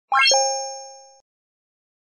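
Short logo sound effect: a quick rising run of bright notes, then a two-note chime that rings and fades, cut off abruptly a little over a second in.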